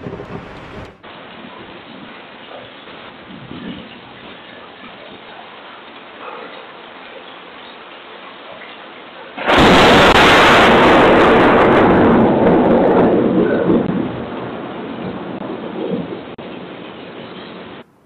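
Steady heavy rain picked up by a doorbell camera's microphone. About halfway through, a sudden loud thunderclap from a nearby lightning strike rumbles for about four seconds, then fades away over a few more.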